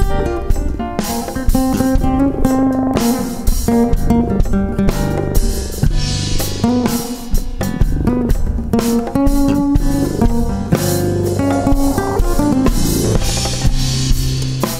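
Instrumental jazz played on guitar and drum kit over a bass line.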